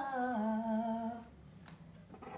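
A woman's voice singing a closing note without words: it slides down to a lower note, holds it briefly, and stops a little over a second in.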